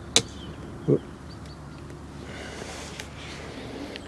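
A single sharp click just after the start, then a quiet steady low hum with a faint tick near the end.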